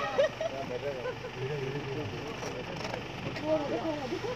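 Low murmur of several people talking quietly over a steady background rumble.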